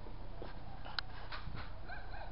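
A few brief, high-pitched cries, each a fraction of a second long and spaced about a quarter to half a second apart, over steady low background noise.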